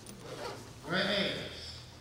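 A man's voice reading aloud into a microphone: a short pause, then a brief spoken phrase about a second in.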